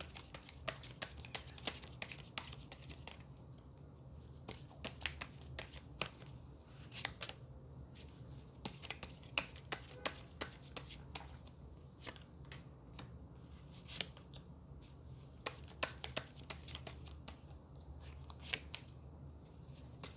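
Tarot cards being shuffled and dealt onto a tabletop: a quiet run of irregular short sharp snaps and slaps of card against card and card on the table.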